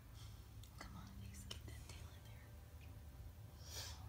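Faint whispering and breathy sounds, with a few small clicks early on and a short breathy hiss near the end, over a steady low hum.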